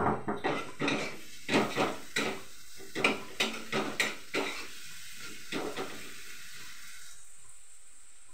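Metal spatula knocking and scraping in a frying pan on a gas stove, a quick irregular run of clatters for about six seconds. It gives way near the end to a steady sizzling hiss from the pan.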